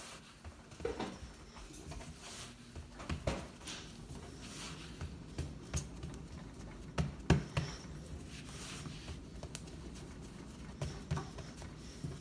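Hands pressing pizza dough flat on a floured wooden countertop: faint, irregular soft pats and taps of palms and fingers on the dough and wood.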